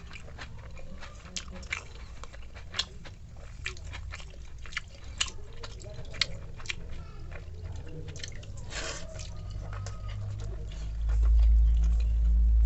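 Close wet squishing and clicking of a hand squeezing water-soaked rice (pakhala) in a steel bowl: many short sharp ticks. Near the end a loud low rumble comes in.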